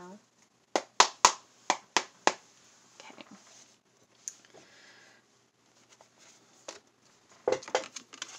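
A deck of tarot cards being shuffled by hand: a quick run of sharp card snaps in the first couple of seconds, then softer rustling of the cards.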